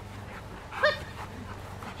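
A young female Rottweiler gives one short bark a little under a second in.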